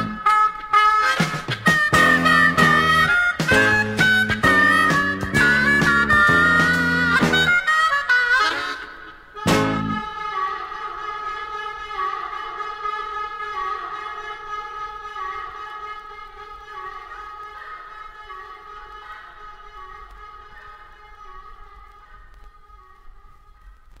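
Harmonica-led rock band playing the end of a song: harmonica over bass and drums, then a final hit about nine and a half seconds in. A held chord follows and slowly fades out.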